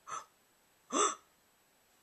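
Two short wordless vocal sounds: a faint one at the start and a louder one about a second in that rises in pitch, with near silence between them.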